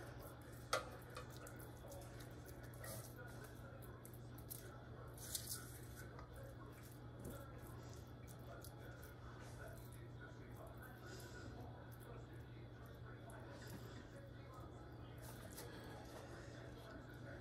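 Faint wet dabbing and smearing of a silicone basting brush spreading barbecue sauce over a rack of cooked pork ribs, with a couple of soft clicks about a second in and around five seconds. A steady low hum lies under it.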